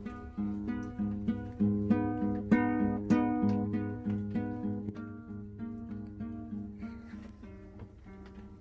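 Acoustic guitar strummed in a steady rhythm of chords, about two strokes a second, growing quieter over the last few seconds.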